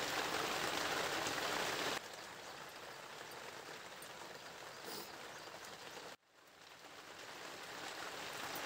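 Steady background hiss with no distinct events. It drops in level about two seconds in, cuts out briefly a little past six seconds, then swells back.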